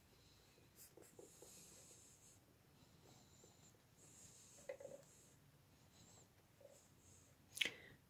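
Near silence with faint rustling of thick cotton yarn as it is wound and tied around the middle of a crocheted bow, and a short sharp sound near the end.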